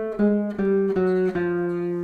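Gypsy jazz guitar with a small oval soundhole, picked as a single-note melody. A few short notes come about every half second, then one note is held through the second half.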